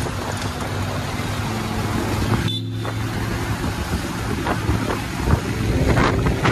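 Motorcycle engine running steadily while riding along a street, with wind and road noise on the microphone.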